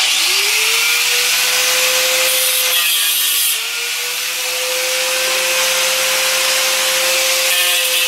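Small corded handheld power tool starting up with a rising whine, then running steadily as it cuts off nails protruding from the floor. Its pitch and loudness dip briefly about three seconds in.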